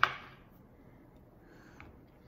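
A metal spoon clacking once against a plastic cutting board as it is picked up, followed by quiet with one faint tick near the end.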